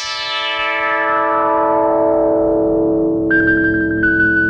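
Synthesizer music: a held chord whose bright top gradually dulls and mellows, with a low pulsing underneath. About three seconds in, a high single note enters over it.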